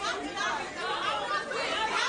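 Several people's voices chattering at once, like an audience talking among themselves.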